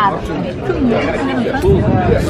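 Speech: people talking, with background chatter.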